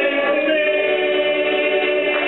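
Live acoustic folk music with long held chords, the chord changing about half a second in.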